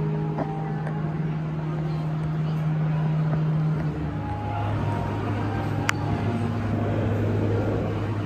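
Busy indoor ambience dominated by a steady low hum that drops to a lower pitch about halfway through, with faint background music; a single sharp click comes about six seconds in.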